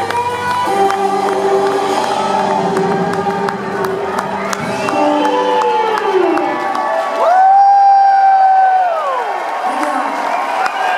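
A rock band's closing notes ringing out under a cheering, clapping concert crowd. About seven seconds in, a loud high whoop from the crowd rises, holds for a second and a half and falls away.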